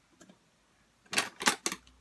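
Three quick, sharp clicks about a second in, from scissors and paper being handled on the craft table.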